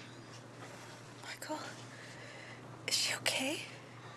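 Soft whispering, breathy and getting stronger about three seconds in, over a low steady hum.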